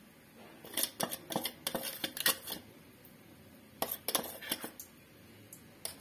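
A metal spoon clinking and tapping against steel as spice powder is measured out and added to chicken in a stainless steel bowl. The clinks come in small clusters of quick clicks, around one second in, around two seconds in and around four seconds in.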